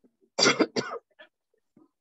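A person coughing twice in quick succession, two short, loud coughs about half a second in.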